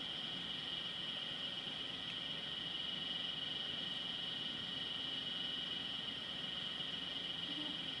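A steady high-pitched drone that holds one level throughout, with no distinct events over it.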